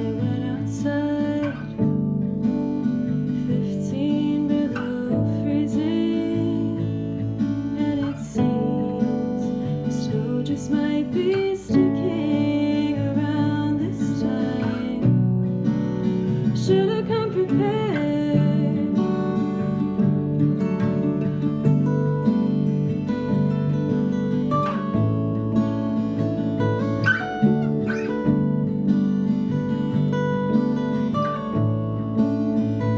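Small acoustic band playing a slow song: two acoustic guitars strummed and picked over a digital piano, with a woman singing lead in phrases that come and go.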